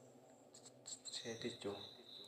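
A quiet pause in a man's talk, broken by a few soft spoken syllables after about a second, with faint high-pitched chirping tones in the background.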